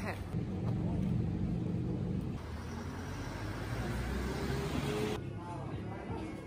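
Street sound of a car passing close by, its engine and tyre noise swelling over a few seconds, then cut off abruptly about five seconds in.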